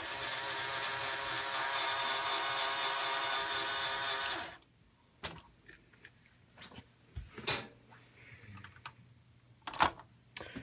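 Small LEGO electric motor and plastic gears running with a steady whine for about four and a half seconds, turning the model truck's fake engine pistons, then stopping suddenly. A few faint clicks and knocks follow.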